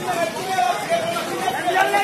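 Several people shouting and calling out to one another with raised, drawn-out voices.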